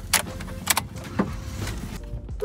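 Car keys jangling and clicking at the ignition of a Suzuki Swift: a few sharp clicks over a steady low rumble.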